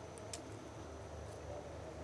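Quiet background ambience with a faint steady high-pitched tone and a single faint click about a third of a second in.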